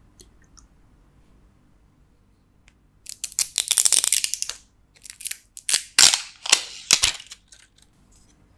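The red plastic cap of a glass Kikkoman soy sauce dispenser bottle being twisted and handled: a rapid run of fine clicking and crackling about three seconds in, then a series of sharper separate clicks and crackles.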